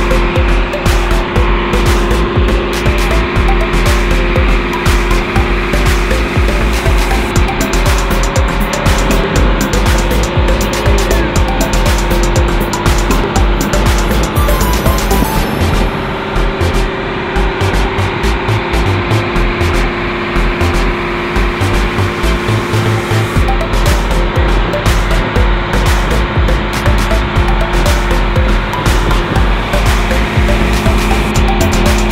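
Outrigger boat's engine running steadily under way, a loud constant drone with a deep rumble, mixed with wind and water noise on the microphone.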